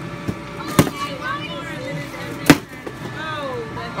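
A wooden stick striking a cardboard piñata twice: once a little under a second in and again, harder, about two and a half seconds in.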